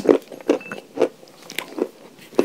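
Close-up chewing of pieces of chalk: a run of sharp crunches, about two a second.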